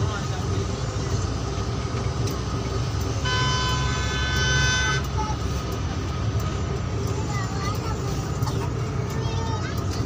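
Bus engine running under way with road rumble, heard from inside the cab. A vehicle horn sounds once about three seconds in and is held for nearly two seconds.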